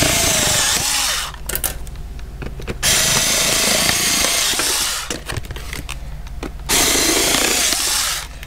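Warrior cordless rotary cutter's small motor running as it cuts through a clear plastic clamshell package, in three runs of about two seconds each with short pauses between.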